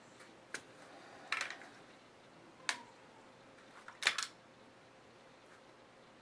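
Hands pulling fabric strips tight and pressing them down onto a glued template: a few short clicks and rustles over a quiet room hiss, the loudest about four seconds in.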